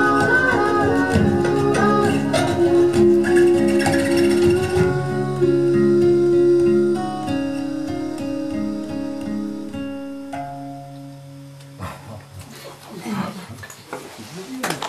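Acoustic guitar playing the final bars of a song, with plucked notes ringing over sustained chords, growing quieter and dying away about twelve seconds in.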